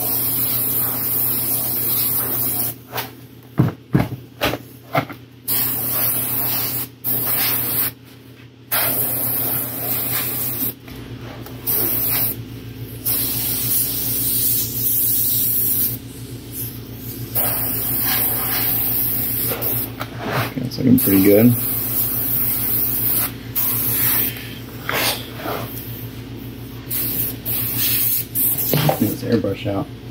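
Airbrush spraying paint in repeated on-off bursts: a high hiss that starts and stops as the trigger is worked, with short pauses between passes. A steady low hum runs underneath.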